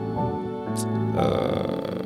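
Synth pad from the Pigments software synthesizer playing sustained chords, EQ'd to spread its top end. About halfway through, a fuller, brighter chord layer comes in.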